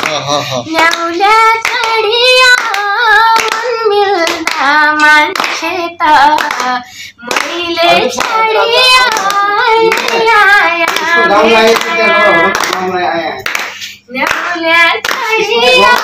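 A woman singing a song solo, her voice gliding between held notes in phrases with short pauses between them.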